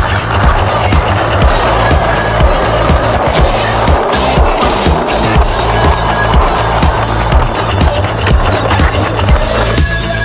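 Skateboard wheels rolling over rough asphalt, a steady rolling noise that stops shortly before the end, with background music and a steady beat underneath.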